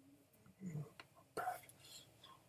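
Faint, soft speech: a person's voice in short phrases.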